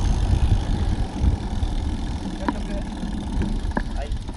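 Low wind rumble buffeting the microphone of a camera riding on a moving bicycle, mixed with tyre noise on asphalt. It eases slightly toward the end.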